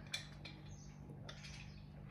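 Quiet sips and swallows of water drunk from a glass jar, over a low steady hum.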